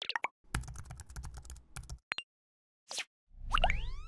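Sound effects for an animated logo reveal: a few quick pops, then a rapid run of keyboard-like typing clicks over a low rumble, a short whoosh, and a louder rising swoosh with upward-gliding tones about three and a half seconds in.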